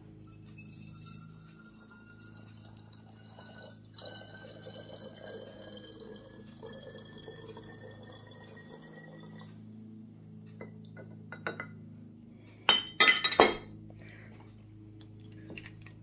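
Liquid extract poured from a glass measuring jug into a narrow-necked amber glass bottle, the filling note rising steadily in pitch as the bottle fills, for about nine seconds with a brief break about four seconds in. A few sharp clinks follow about thirteen seconds in.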